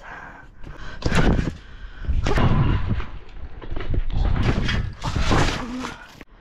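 A trick scooter and rider bouncing on a trampoline: a sharp thud about a second in, then two longer stretches of heavy thumping and rushing noise as the mat is hit and the scooter swung.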